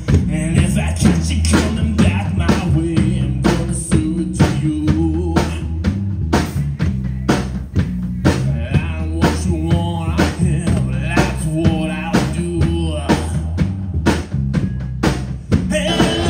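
Live rock band playing: electric guitar, electric bass and a drum kit keeping a steady beat, with a man singing over them.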